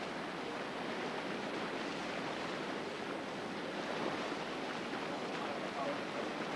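Whitewater rapids on an artificial slalom course, a steady rush of churning water.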